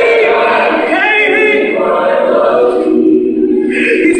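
A choir singing, voices holding long, sustained notes.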